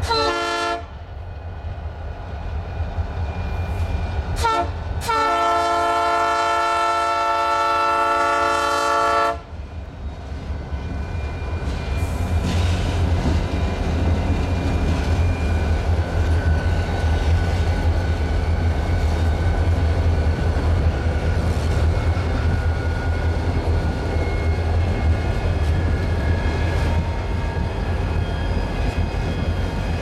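Horn of a Soo Line EMD SD60 diesel locomotive: a blast that ends just under a second in, a brief toot a few seconds later, then a long blast of about four seconds, the closing short-and-long of a grade-crossing signal. The train then rolls past with the deep steady rumble of the locomotives and the clickety-clack of the freight cars' wheels over the rail joints.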